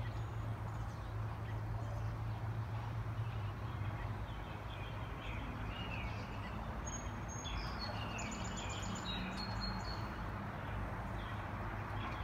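Small birds chirping in short repeated notes over a steady low background rumble, with a thinner, higher whistled call joining in around the middle.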